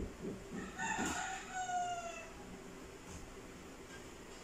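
A rooster crowing once, starting about a second in: a call of about a second and a half with a drawn-out falling note at the end.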